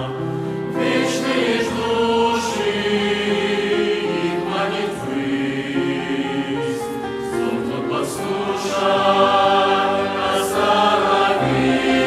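Mixed youth choir of men's and women's voices singing a Russian hymn in sustained chords, the notes held and changing together every second or so.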